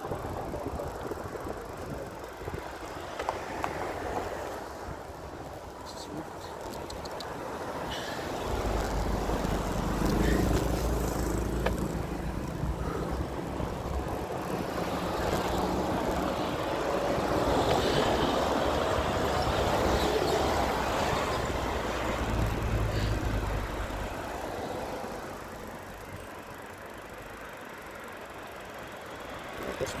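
Road traffic heard from a moving bicycle: a steady rush of road noise, with a motor vehicle's engine rumble that builds from about eight seconds in, stays loud for some fifteen seconds and fades away near the end.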